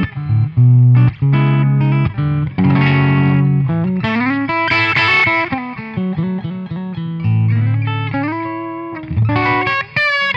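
Electric guitar on its bridge pickup, played through a Joyo Rated Boost clean-boost pedal with the low EQ turned well up. It plays a riff of chords and single notes with a warm, bass-heavy tone and a slight overdrive.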